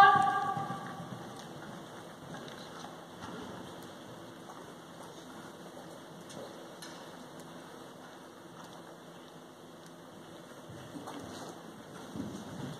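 A drawn-out shouted call fades out in the first second. Then a faint, steady hiss of a large indoor riding arena follows, with a few soft ticks.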